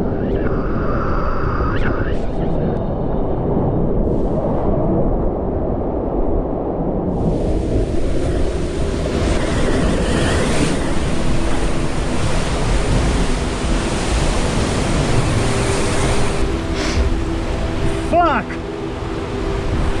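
Ocean surf breaking against the rocky base of a sea cliff: a continuous low rumbling wash that grows fuller and hissier about seven seconds in and stays that way.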